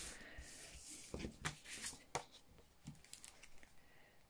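Paper panels and cardstock slid and shifted by hand on a tabletop: quiet paper rubbing with a few soft taps and rustles, mostly in the first two seconds.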